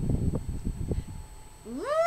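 A woman's drawn-out 'ooh' that rises in pitch and is held, starting near the end. Before it comes about a second of low, irregular rumbling with a few soft knocks.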